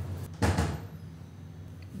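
Electric guitar being handled as it is passed into someone's hands: a single dull knock about half a second in, over a low steady hum.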